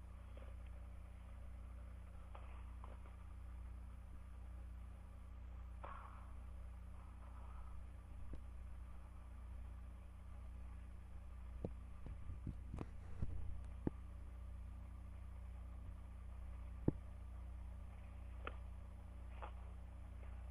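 Steady low electrical hum in a quiet room, with small handling clicks and taps: a cluster of light taps a little past the middle and one sharp click toward the end.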